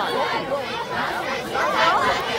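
A group of high-pitched voices, young cheerleaders, talking and calling out over one another at the same time.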